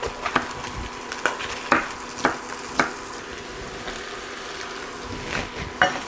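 Chef's knife cutting through a green bell pepper onto a wooden cutting board: about six sharp knocks in the first three seconds, a pause, then two more near the end. A faint steady hum runs underneath.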